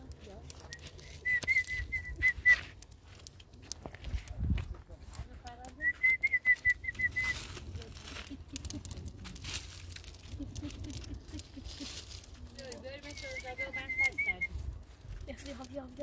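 A high warbling whistle, three short trilled phrases a few seconds apart, each about a second and a half long, with murmuring voices underneath.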